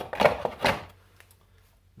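A few quick clicks and knocks in the first second, from handling the charger's plastic plug and cable leads.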